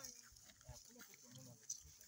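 Near silence: faint outdoor background with a few faint, indistinct sounds and a brief tick near the end.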